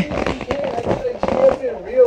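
A person's voice making drawn-out, wavering wordless sounds, with small clicks running through it.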